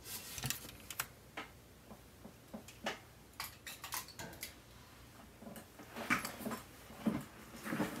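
Scattered light clicks and taps of hard plastic as a Transformers action figure is picked up and handled on a tabletop.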